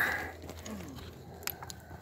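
Faint crunching and scraping of loose soil and debris as gloved hands dig at the bottom of a bottle-dump pit, with one sharp click about a second and a half in.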